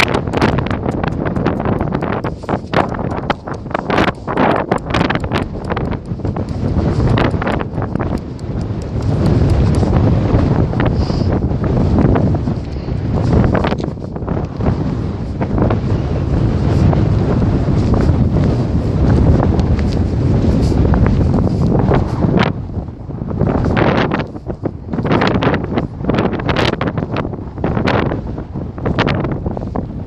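Wind buffeting a phone's microphone: a loud, rough rumble that swells and drops in gusts, with short crackles throughout.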